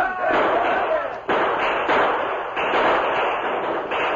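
Old radio-drama gunfight sound effect: a volley of gunshots with several sharp reports over men shouting.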